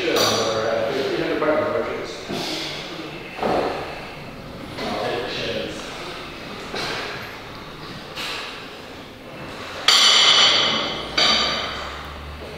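Gym room sound: low voices, knocks and clinks, with two sudden louder noises near the end, each fading over about a second.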